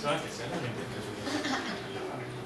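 Indistinct murmuring voices with some light chuckling, no clear words.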